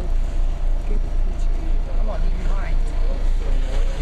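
A loud, steady low rumble that pulses about three times a second, under faint voices of people talking.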